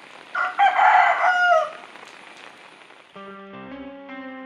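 A rooster crowing once, a call about a second and a half long that ends on a falling note. Soft plucked-string background music comes in near the end.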